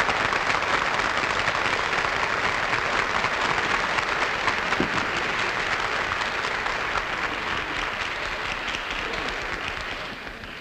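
Studio audience applauding steadily, the clapping slowly dying down toward the end.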